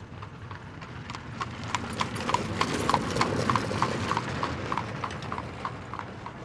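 Horse hoofbeats in an even rhythm of about three a second, getting louder toward the middle and then fading as the horse passes close.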